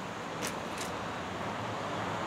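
Steady outdoor background noise: a low hum of distant road traffic.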